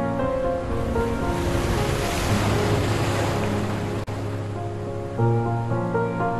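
Slow instrumental music with held notes, covered by the rush of a wave that swells over a couple of seconds and then dies away. The music comes back clearly about five seconds in, just after a brief dropout.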